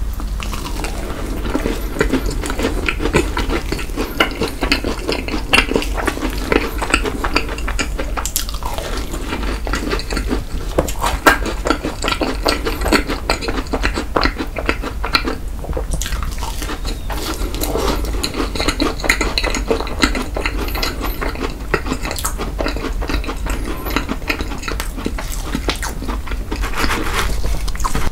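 Close-miked chewing of a strawberry fat macaron: a dense run of small sticky clicks and smacks, with soft crunching of the macaron shell.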